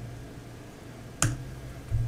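A single sharp click a little over a second in, typical of a key or presentation clicker pressed to change slides, followed by a faint low hum.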